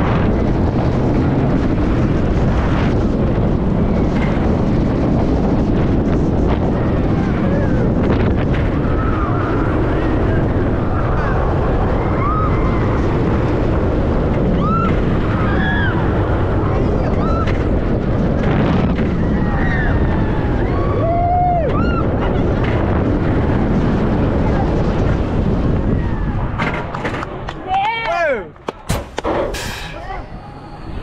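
Roller coaster ride at speed on a steel-track hybrid coaster: a loud, steady rush of wind buffeting the microphone over the rumble of the train on the track, with riders screaming and whooping on and off. Near the end the noise drops away as the train reaches the brake run, and loud yells break out.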